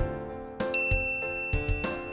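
A bright ding chime about three-quarters of a second in, ringing on. It marks a correct answer as the green tick appears. Children's background music with a steady beat runs under it.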